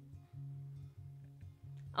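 Quiet background music: a plucked guitar over a steady, low bass line.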